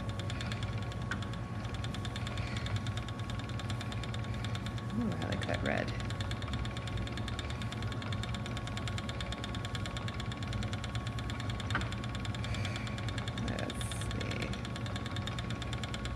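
Ashford Elizabeth 2 spinning wheel running steadily under treadling, a continuous mechanical whir with a low hum and a fine even rhythm. The wheel is dry and a bit out of balance and needs oiling.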